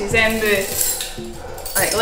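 Light metallic clinking over background music.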